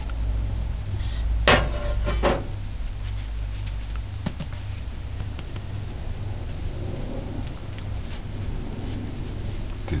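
Two knocks about a second apart, a second and a half in, as a freshly baked loaf and its metal loaf pan are handled on a wooden cutting board, followed by faint handling ticks. A low steady hum runs underneath and drops away about four seconds in.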